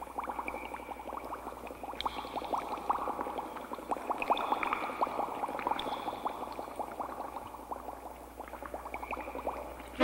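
Underwater bubbling sound effect: a dense, steady stream of small bubble pops.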